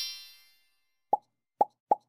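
Logo-animation sound effects: the tail of a rising chime-like sweep fades out, then three short pitched pops follow in quick succession.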